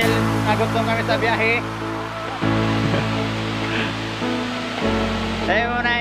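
Background music with sustained low notes that shift twice, laid over the steady rush of a shallow river; brief voices come in about a second in and near the end.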